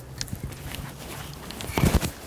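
Clicks and knocks of a camera tripod's legs being handled and moved, with a louder knock near the end.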